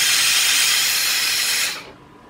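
Boiler-fed industrial steam iron releasing a burst of steam: a loud steady hiss that cuts off near the end.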